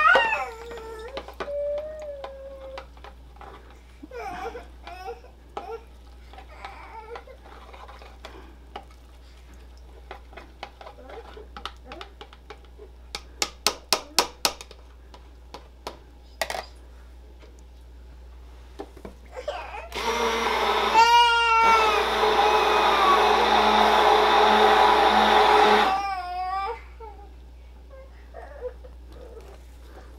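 Handheld stick blender running for about six seconds in the second half, mixing isopropyl alcohol into a thickened hand-sanitizer gel in a plastic beaker. A young child's voice cries out at the start and over the blender, and a quick run of light clicks comes about halfway through.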